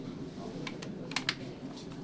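A handful of sharp clicks and taps from work at a potter's wheel, bunched a little under a second in, over a steady low background noise.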